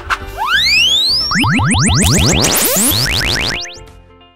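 Cartoon closing jingle of sound effects: one long rising whistle-like glide, then a rapid flurry of short rising chirps over held musical notes, fading out near the end.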